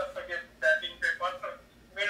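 Speech only: a man talking, with a short pause near the end.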